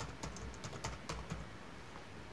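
Computer keyboard typing: a quick, faint run of keystrokes as a search term is entered, trailing off after about a second and a half.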